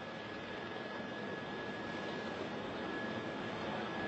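Steady aircraft noise: an even hiss with a faint, steady high whistle running through it, slowly growing a little louder.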